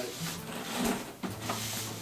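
Quiet handling noise of a handheld tape gun and a cardboard box being held and touched, with a soft knock about a second and a quarter in.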